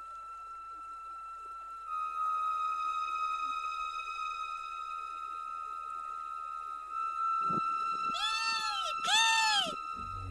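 Soundtrack music holding a long steady note. Near the end come two loud, drawn-out cries, each rising then falling in pitch: the kestrel's call.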